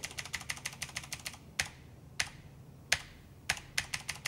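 Computer keyboard key tapped over and over: a quick run of presses, then single presses about half a second apart, then a few quicker ones near the end.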